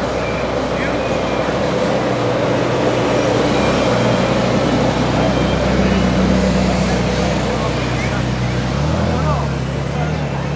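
Ferrari California's V8 engine running at low speed as the car drives slowly past, with a slight rise in pitch near the end.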